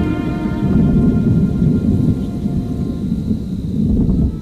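Low, rolling rumble of thunder, swelling about a second in and again near the end, under faint sustained music chords.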